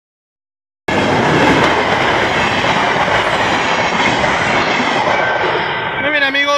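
A diesel-hauled passenger train running fast across a level crossing on newly relaid track, its wheels loud on the rails. The sound starts abruptly about a second in and eases off towards the end as the train moves away, with a thin steady tone coming in near the end.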